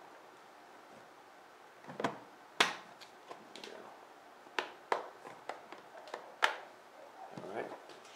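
Harley-Davidson V-Rod air box cover being eased into place by hand: about half a dozen sharp clicks and knocks spread over a few seconds as it is hooked on and seated.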